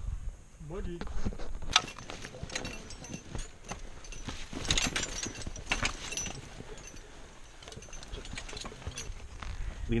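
Irregular sharp knocks, clicks and rustling of boots, climbing hardware and brush on rocky ground, loudest in the first half.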